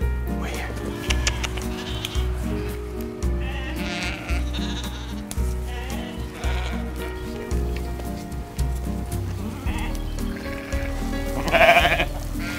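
Cameroon sheep bleating several times, the loudest call near the end, over background music with a steady beat.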